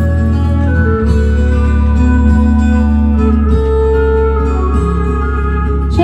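A 1972 Italian pop recording playing from a vinyl LP on a turntable. This is an instrumental passage of sustained chords over a steady bass, with the chords changing about a second in and again past halfway.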